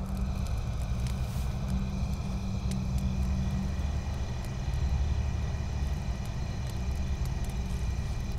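A steady low rumble with a hum in it, and faint thin high steady tones above it.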